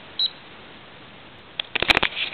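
A single short, high electronic beep from a digital timer's button just after the start, then a quick cluster of sharp clicks and knocks near the end as the camera is handled.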